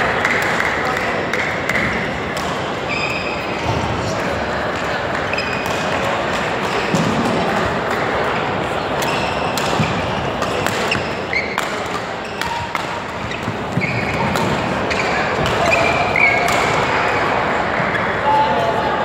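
Badminton doubles play in a large hall: sharp racket strikes on the shuttlecock and short squeaks of court shoes, over a steady hubbub of voices and play from neighbouring courts.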